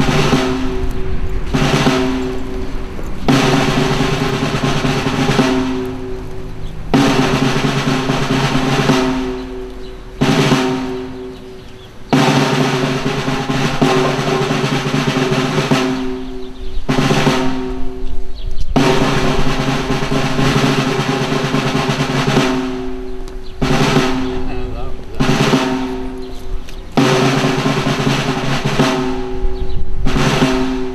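Ceremonial snare drum roll, played as a series of sustained rolls a few seconds long with short breaks between them, the customary accompaniment to the laying of wreaths.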